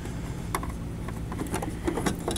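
A few light clicks of the plastic lamp-housing cover on a Sony rear-projection TV as it is handled, with a sharper click near the end as it is pulled out.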